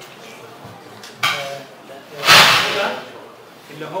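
A man's voice in a hesitant pause between phrases: a short vocal sound about a second in, then a louder, breathy vocal burst a little past the middle.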